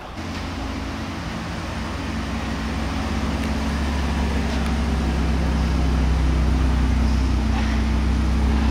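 Bentley Continental GT Speed's engine idling: a steady low hum that grows gradually louder as it nears the exhaust.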